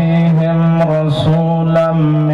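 A man's voice chanting a melodic religious recitation in long, drawn-out held notes that shift in pitch a couple of times, with brief hissed consonants between them.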